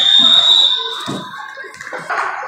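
Referee's whistle blown in one long shrill blast that stops about a second in, with a couple of dull thuds under it.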